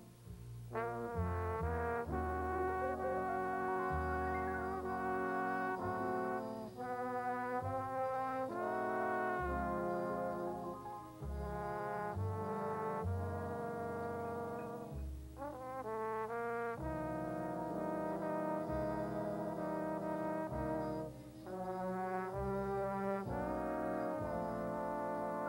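Jazz big band playing a slow ballad: the brass section, trombones prominent, holds rich sustained chords over a plucked string bass, with a trumpet playing. The notes come in long held phrases with short breaks between them.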